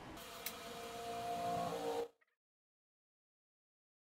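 A faint, steady hum under light hiss, with one small click about half a second in. It cuts off abruptly about two seconds in to dead silence.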